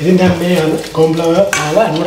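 A man speaking in Sinhala, his voice the loudest sound.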